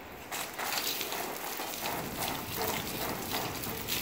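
Water spattering down onto a nylon rain jacket and wet paving in a scatter of irregular splashes.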